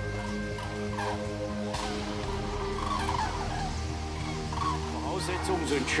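A large flock of birds calling, short scattered calls every second or two, over steady background music.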